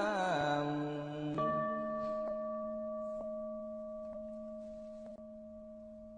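A chanting voice ends on a held note in the first second. About 1.4 s in, a Buddhist bowl bell is struck once and rings on with a steady, slowly fading tone, with a few faint ticks under it.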